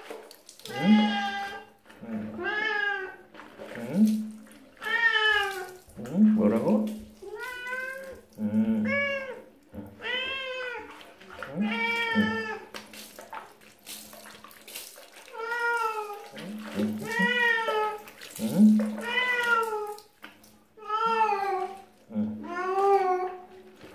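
Tabby domestic cat meowing over and over while being bathed, about one call every second or so, each call rising and then falling in pitch.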